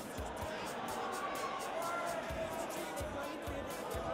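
Faint background music over the murmur of a large gymnasium, with scattered soft low thumps.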